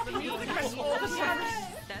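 Several people's voices overlapping at once, excited chatter and laughter with no single clear speaker.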